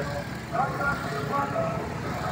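Motor scooters and motorcycles passing close by on a road, their small engines giving a steady low rumble, with faint voices in the background.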